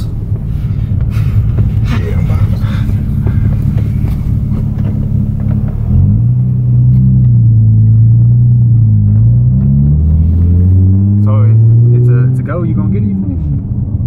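Nissan 350Z's 3.5-litre V6, heard from inside the cabin while driving: a steady low drone, then from about six seconds in it gets louder. Its pitch climbs as the car accelerates, then drops off shortly before the end.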